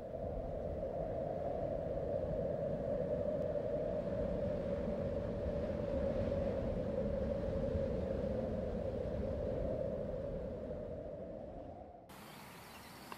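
A steady, low droning hum with a rumble beneath it, swelling up at the start and fading out near the end: a synthetic drone laid under an opening title sequence.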